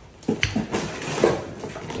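Hard plastic vacuum parts and accessories being handled and set down, with a sharp click about half a second in, then light clattering and rubbing.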